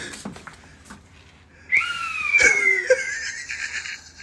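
A person's stifled, high-pitched wheezing laugh, breaking out suddenly a little under two seconds in and lasting about two seconds.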